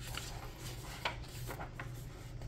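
A page of a paperback picture book being turned by hand: a few faint paper rustles with a small tap about halfway through, over a low steady hum.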